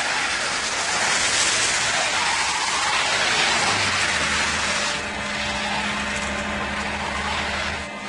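Pickup truck driving on a wet, snowy road: a loud rushing hiss of tyres and air that starts suddenly, thins out about five seconds in, with a low engine hum underneath in the second half.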